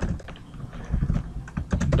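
Typing on a computer keyboard: a few separate keystrokes, then a quick run of them near the end.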